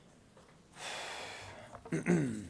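A single breath heard close to a microphone: about a second of airy noise starting a little under a second in and fading out, then a small click near the end.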